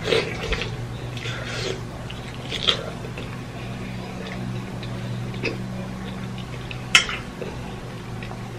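A person chewing a mouthful of lobster tail meat, with soft wet mouth noises and a few small clicks, the sharpest near the end, over a steady low hum.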